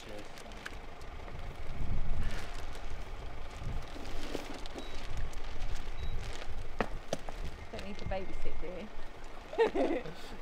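Luggage being unloaded from a van: bags handled, with a few sharp knocks as a suitcase is set down, and low talk in the background.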